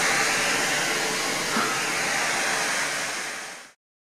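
FM static from a Sangean portable radio's speaker: the steady hiss of an empty FM channel with no station received. It fades out and stops a little before the end.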